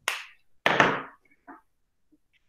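Two short scraping knocks about two thirds of a second apart, with a fainter one about a second and a half in: handling noise from drawing instruments or paper on the desk.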